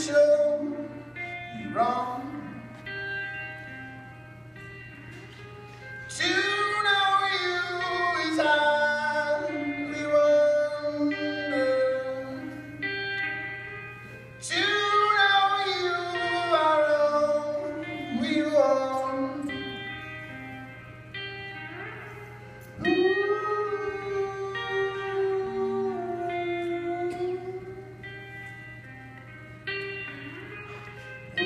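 Live band music: an electric guitar with a voice singing long, drawn-out phrases that swell in about every eight seconds, echoing in a large hall, over a steady low hum.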